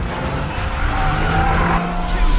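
Car tyres skidding, building up about a second in, with a steady engine note beneath, over trailer music.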